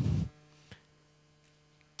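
A man's voice through a microphone breaks off, followed by a pause with a faint steady electrical hum and one small click.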